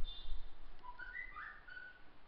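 Faint, short whistled notes at a few different pitches, stepping up and down, over quiet room tone.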